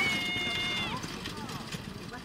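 A person's long, high-pitched shout held on one pitch for about a second, then fainter short calls, cheering on the carriage driver.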